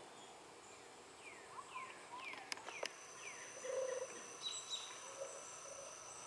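Wild birds calling: a run of short down-slurred whistled notes, two sharp clicks, then a lower, louder call a little before four seconds in. A thin steady high buzz comes in for the last second and a half.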